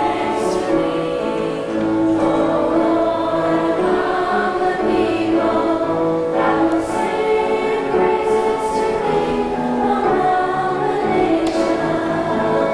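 A choir of young voices, girls and boys, singing a slow hymn in long held notes.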